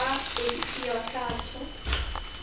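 Voices of people talking, with a few light clicks.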